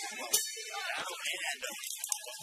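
Boxing ring bell struck once, sharp and ringing on, signalling the end of the round, over voices and crowd noise.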